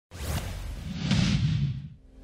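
Whooshing sound effect of a logo intro sting, swelling about halfway through and fading away at the end.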